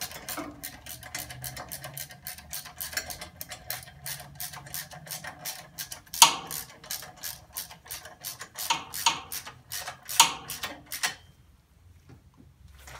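Hand socket ratchet clicking as bolts on the exhaust manifold are tightened down: a steady run of quick clicks with a few sharper metal knocks, stopping about a second before the end.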